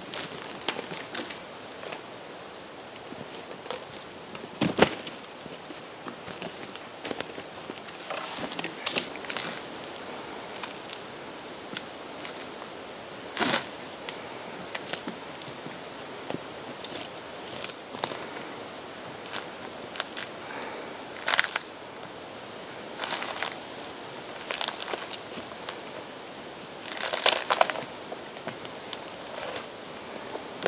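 Bark being peeled from a freshly felled log: irregular cracks and snaps, with a few longer tearing rips as strips come away.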